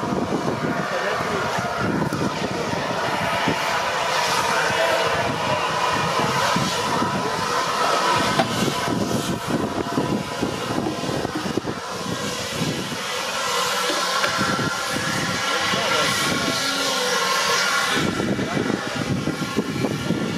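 Fire extinguishers hissing as they are sprayed on a race car fire, with a short dip about twelve seconds in; people talk in the background.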